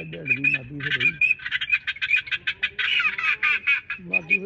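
A flock of waterfowl calling on open water: a dense chatter of short, quick, high calls that thickens after about a second.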